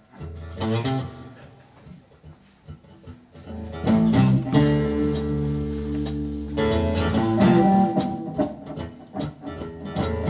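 Live blues band starting a song: a short guitar phrase just after the start, then drums, bass guitar and guitars come in together about four seconds in, with drum and cymbal hits over a strong bass line.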